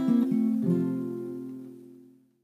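Acoustic guitar playing a few last notes, then a final chord struck a little over half a second in that rings out and fades away.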